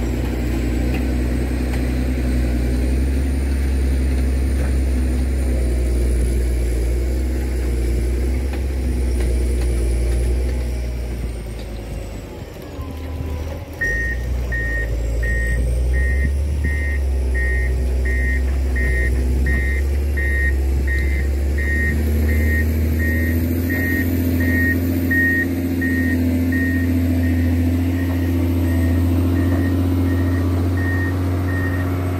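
A John Deere 670GP motor grader's diesel engine running steadily, dipping briefly about midway. From about halfway its reversing alarm beeps steadily, about three beeps every two seconds, as the grader backs up, and the engine note rises in the last third.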